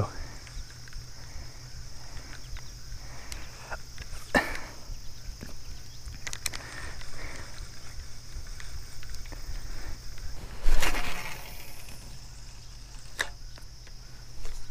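Pond-side ambience with a steady high insect drone, a few scattered clicks and knocks of fishing-rod and spinning-reel handling, and a louder brief rush of noise about eleven seconds in.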